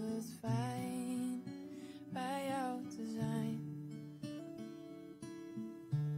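Acoustic guitar strummed and picked, with a woman singing two long, wavering notes in the first half. After that the guitar plays on alone.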